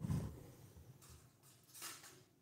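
Handling noise close to the microphone: a dull thump at the start, then faint rustling and a short hiss near the end.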